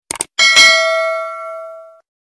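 Subscribe-animation sound effect: two quick mouse clicks, then a single bell ding that rings out and fades over about a second and a half.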